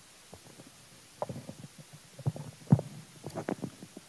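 Handling noise of a handheld microphone being passed over and gripped: a string of irregular soft bumps and rubbing thuds, the sharpest one a little past the middle.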